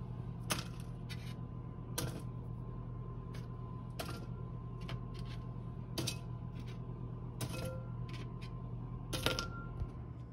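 Roasted chestnuts being picked off a metal baking tray and dropped into a glass bowl: about ten sharp clicks and knocks spread unevenly, over a steady low hum.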